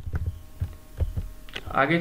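Computer keyboard keys clicking several times, spaced irregularly, over a steady low electrical hum.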